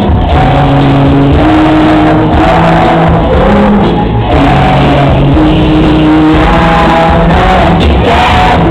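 Loud live pop music from a band on stage, with a singer's voice over the full band, heard from within the audience.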